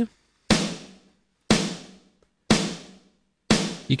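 Sampled snare drum playing on its own, four even hits a second apart, each fading quickly. The Beat Repeat effect on it is adding little or nothing audible yet: the preset still needs adjusting.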